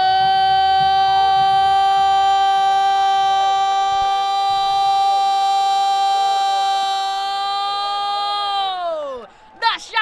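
Portuguese-language football commentator's goal cry: 'gol' shouted and held on one steady high note for about nine seconds, then sliding down in pitch and breaking off near the end.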